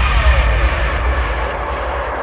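Electronic music breakdown: a noisy whoosh with a tone sweeping down in pitch, like a jet passing, while the deep bass thins out toward the end.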